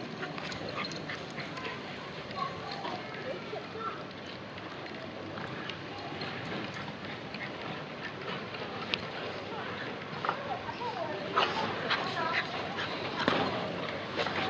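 Two Bichon Frise dogs playing rough, with dog vocal sounds and scuffling that grow busier and louder in the last few seconds as they wrestle on a bean bag chair.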